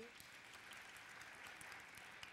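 Faint applause from a congregation, a soft even clapping of many hands.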